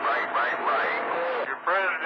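Voices received over long-distance skip on a CB radio's channel 28, coming through band-limited and hard to make out against static hiss. There is a short break about three-quarters of the way in before a stronger voice comes in.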